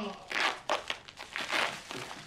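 Plastic bag crinkling and tearing as it is ripped off a man's head, in a few quick rustles.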